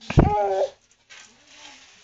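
A thump followed by a short, high-pitched cry with a wavering pitch, about half a second long, right at the start; after it there is only faint background noise.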